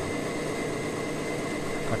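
Steady background hum and hiss with a few constant high tones, unchanging throughout.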